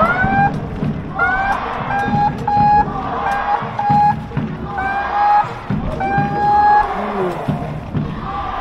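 Supporters' horn playing a chant tune in short held notes, each scooping up in pitch at its start, over low drumbeats and crowd noise in a football stadium.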